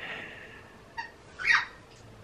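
A pet animal's short, high, squeaky vocal sounds: a faint one at the start and a louder, brief rising-and-falling squeal about a second and a half in.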